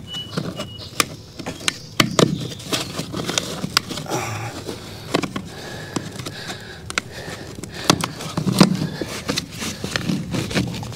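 Black corrugated plastic drain-pipe tee being pushed and twisted by hand onto a pipe in a tight fit: a run of irregular clicks, creaks and scrapes from the plastic ridges and soil, with a few duller knocks.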